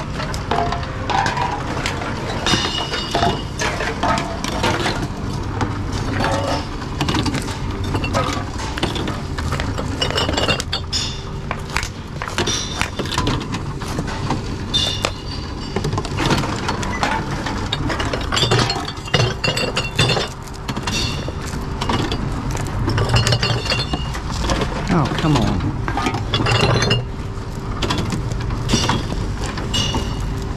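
Glass bottles, plastic bottles and cans clinking and knocking together as they are handled and fed into a reverse vending machine, over the machine's steady hum. Short high beeps recur every few seconds.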